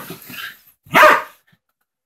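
A dog barking once, loud and short, about a second in, during rough play with other dogs.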